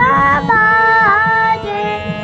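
A young girl singing a Hindustani classical bandish in raag Asavari, holding long notes and gliding between them, with a harmonium sustaining notes beneath her voice.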